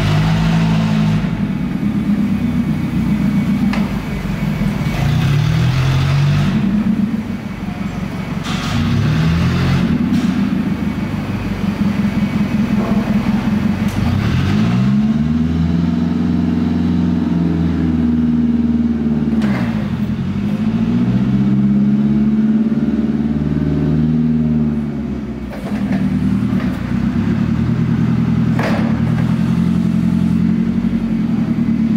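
Propane engine of a 1991 Mitsubishi 5,000 lb LP forklift running as the truck is driven about, its pitch rising and falling as the engine revs up and eases off several times. A few short knocks and clatters come through along the way.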